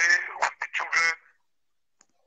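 A person's voice over a video-call connection: a few short, harsh, distorted syllables in the first second or so, then silence.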